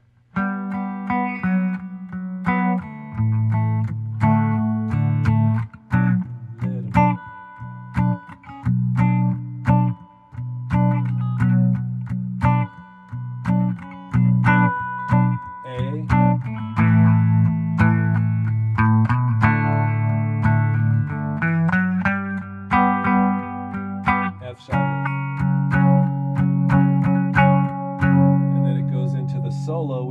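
Four-string tenor guitar tuned GDAE, strummed in a busy rhythmic chord pattern through a chord progression that moves into a run of B minor bars. The last chord is left ringing and fades near the end.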